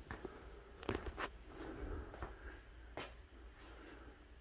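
Quiet room with a faint low hum and a few light taps and clicks, about one second in and again near three seconds: footsteps on a hard floor.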